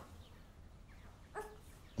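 Quiet room tone, with one short, faint sound a little under a second and a half in.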